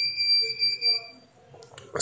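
A steady high-pitched tone that fades out a little over a second in.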